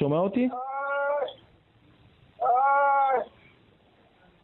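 A man crying out in pain, two long, high, drawn-out moans of "ay", after another man's brief question at the start. The cries come from severe pain.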